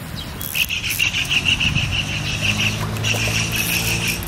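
An insect chirping in a high, rapid pulsing call of about five pulses a second, starting about half a second in, over a low, steady motor hum.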